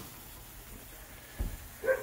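A dog barking once, short and sharp, near the end, over otherwise quiet room tone, with a dull bump just before it.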